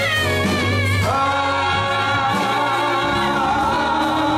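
Gospel singing by a small group of voices over keyboard accompaniment, with long held notes over a steady bass.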